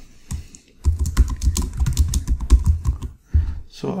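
Typing on a computer keyboard: a quick run of key clicks starting about a second in and stopping shortly before the end, as a short title is typed.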